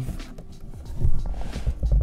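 Cardboard box flaps being opened and handled, with rustling and soft thumps in the second half, over background music.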